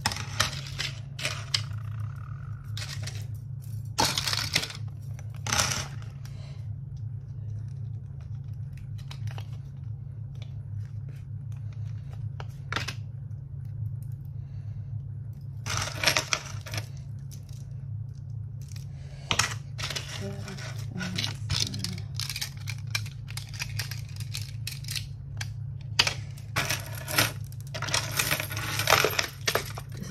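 Metal jewellery chains and pieces clinking and jangling as they are handled and dropped into piles on a counter, in scattered bursts with a busier run near the end. A steady low hum runs underneath.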